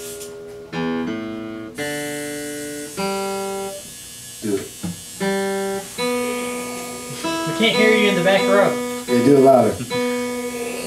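Acoustic guitar chords played one at a time, each struck and left to ring for about a second with short gaps between them. A person's voice comes in briefly near the end.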